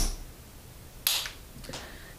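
Popsicle-stick catapult and small plastic game piece on a tabletop: one sharp click, then about a second later a brief scuffing hiss and a faint tap.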